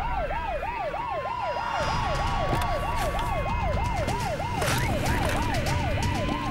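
Emergency vehicle siren in a fast yelp, its pitch sweeping up and down about four times a second. A second, longer tone glides slowly downward over it, and a low rumble comes in about two seconds in.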